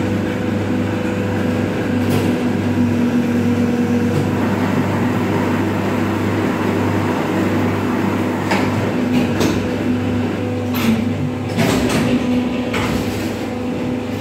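Injection moulding machines running: the hydraulic pump motor gives a steady hum, and a few sharp clanks from the machine's moving parts come once early and several more in the second half.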